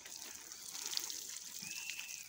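Water showering from a plastic watering can's rose spout onto the soil at the foot of a tree, a steady light hiss. A single short high whistling note sounds near the end.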